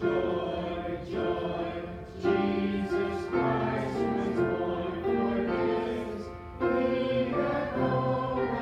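Church music: voices singing over sustained accompanying chords that change about once a second, with a couple of brief pauses between phrases.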